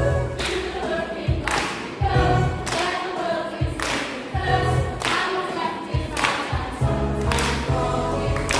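Teenage group singing a musical-theatre song in unison over a recorded backing track, with a strong beat about once a second.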